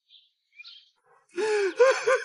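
A young man crying out loud, a drawn-out wail with bending pitch that starts about one and a half seconds in.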